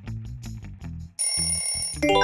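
Background music with a plucked bass line, then, just over a second in, a loud steady bell ringing like an alarm clock: the quiz's time-up sound effect.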